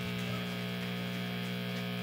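Steady electrical hum and buzz from the band's idle guitar amplification on stage, a low even drone with a few higher steady tones and no notes played.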